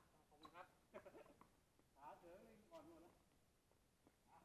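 Faint, distant human voices calling out a few short phrases, otherwise near silence.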